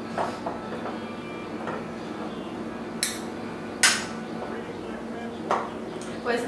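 A metal kitchen utensil scraping and clinking against a mixing bowl as butter is worked into flour for biscuit dough, with soft taps throughout and two sharp clinks about three and four seconds in, the second the loudest.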